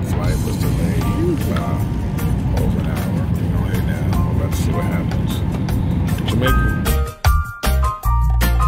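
Steady airliner cabin rumble with faint voices and music underneath. About seven seconds in it gives way abruptly to upbeat music with a heavy bass line.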